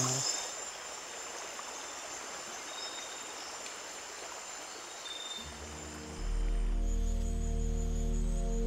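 Night rainforest ambience: insects trilling steadily in a high register over a soft steady hiss, with a couple of short faint chirps. About five and a half seconds in, a low sustained music drone swells in, louder than the forest sound, and the insects fade out.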